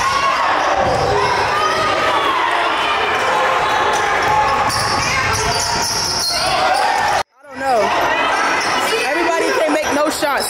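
Basketball being dribbled and bounced on a hardwood gym court, under the steady noise of players' and spectators' voices shouting in the hall. The sound cuts out abruptly about seven seconds in and swells back within half a second.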